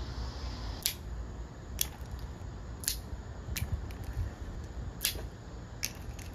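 Wooden pencils being snapped in two, one after another: six sharp cracks roughly a second apart.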